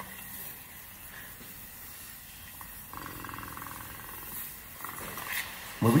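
Water running from a bathroom sink faucet in a steady hiss, getting fuller about halfway through and easing back near the end.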